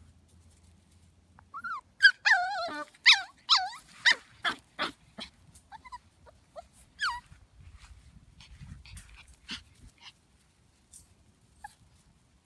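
Six-week-old Shetland sheepdog puppy giving a quick string of high-pitched yips and whines, starting about a second and a half in and thinning out by five seconds, with one more yip about seven seconds in.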